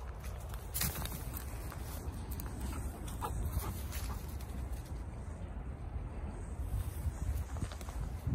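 Footsteps on leaf litter and wood chips, with scattered sharp clicks and a steady low rumble underneath.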